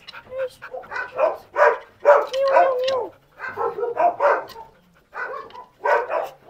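Dogs vocalizing in a run of short yips and whines, with one longer whine a little over two seconds in, as they crowd for attention.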